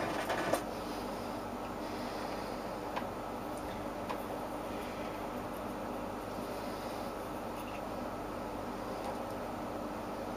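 Steady electrical hum with a layer of hiss from the running mercury vapour lamp and its power supply, with a couple of faint ticks about three and four seconds in.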